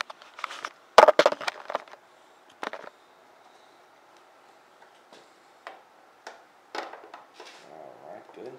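Handling clicks and knocks of a motorcycle side cover being fitted onto the frame, with a quick cluster about a second in, then scattered single clicks.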